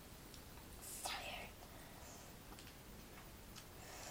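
A boy's short breathy whisper about a second in, then a few faint clicks over low room noise.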